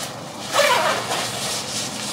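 Two-way front zipper of a Patagonia Macro Puff jacket being pulled up, a sudden rasp about half a second in that runs on more faintly.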